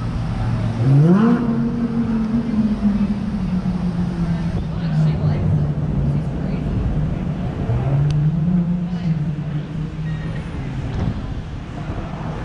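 Road traffic: a motor vehicle engine revs up about a second in and holds a steady pitch, and another engine rises in pitch near eight seconds, over a steady traffic noise bed.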